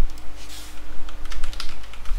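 Typing on a computer keyboard: a short run of keystrokes, with a few near the start and a quick cluster past the middle.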